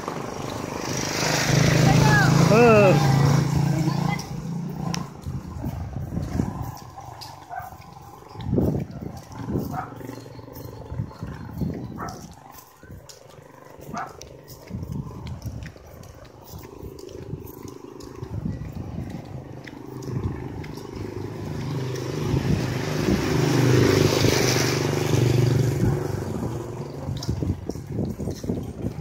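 Street traffic: a motor vehicle passes loudly in the first few seconds and another swells past near the end, with a short wavering voice-like call over the first pass.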